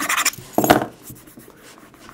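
A metal key dragged hard across the glass screen of an MP3 player: a rapid, rasping scrape that stops just after the start, then a briefer scrape about half a second later. The key is leaving its own metal on the glass rather than scratching the screen.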